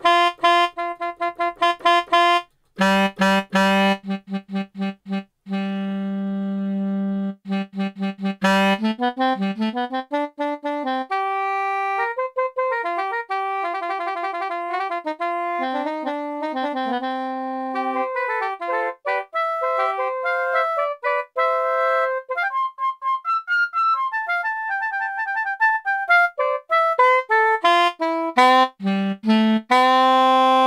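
Sampled saxophone from the BeatHawk Balkans sound pack playing a melody, with repeated short notes at first and some notes sliding up and down in pitch.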